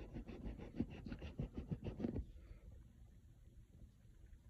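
Rubber eraser rubbed quickly back and forth on paper, rubbing out a pencilled digit; the rapid scratchy strokes stop about two seconds in.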